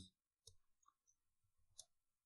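Near silence with a few faint computer keyboard keystrokes, one about half a second in and another near the end.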